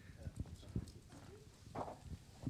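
Faint scattered knocks and bumps from a handheld microphone being handed over and handled, with a brief faint murmur of voices near the end.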